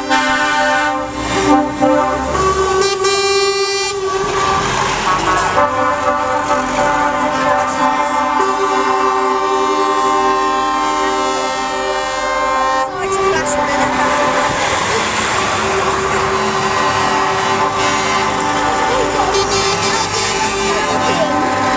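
Lorry air horns blown in long, held multi-note chords that change pitch several times as a convoy of tractor units passes, over the trucks' engine noise.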